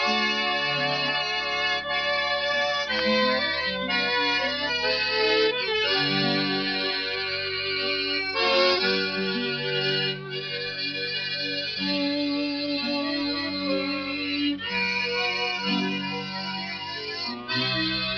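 Instrumental band music from a 1930s radio transcription: a lively tune of changing notes with no singing, its sound thin and limited in the highs.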